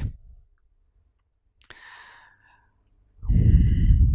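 A man's loud sigh into a close microphone, starting about three seconds in, after a click and a short faint rustle around the middle.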